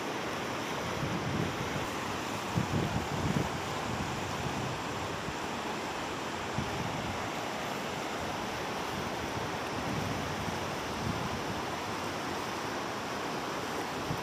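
Steady rushing of a fast river flowing over rocks and rapids. Wind buffets the microphone in gusts about three seconds in and again around ten seconds.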